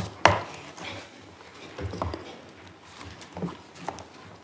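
Knocks and clicks of papers and objects being handled close to a desk microphone at a lectern: a sharp loud knock just after the start, then a few softer knocks spread through the rest.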